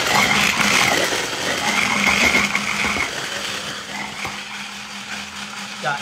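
Electric hand blender with a chopper bowl attachment switched on and running steadily, chopping onion and carrot for a sofrito. The motor cuts in suddenly and gets a little quieter after about three seconds.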